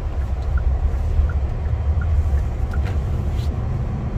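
Steady low rumble of engine and road noise heard inside a car's cabin, with a faint, regular tick about three times a second.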